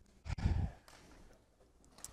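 A short breath or sigh close to the microphone, about a quarter of a second in and lasting under half a second.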